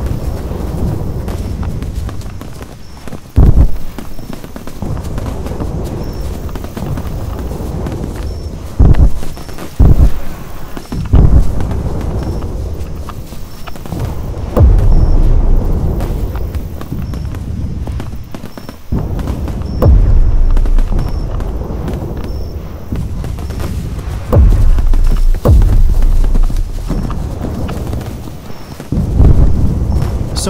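Battle sound effects: horse hooves with a rumbling background, broken by a sharp, loud boom of gunfire every few seconds.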